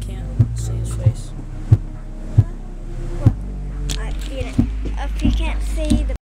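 Deep steady bass hum from a speaker played loud, with sharp thumps roughly every second.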